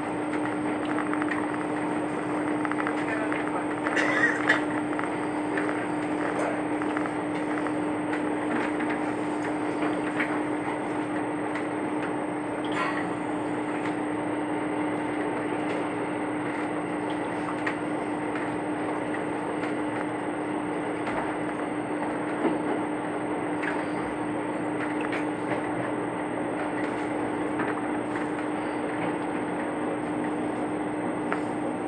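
Cabin noise of a diesel railcar running along the line: a steady rumble with a constant low hum from the engine and drive, and a short cluster of knocks about four seconds in.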